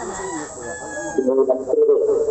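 A rooster crowing, one long call in the second half, over faint talk.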